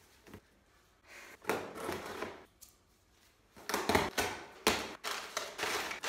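Cardboard packaging being handled and opened by hand: scrapes and rustles, loudest in the last two seconds.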